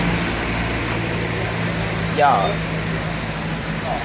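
A steady low mechanical hum over an even hiss, from a motor or machine running without change; a man's voice says one short word about two seconds in.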